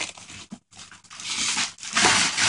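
Wrapping paper crinkling and tearing as a present is unwrapped by hand, in irregular bursts with a brief gap about half a second in and louder tearing in the second half.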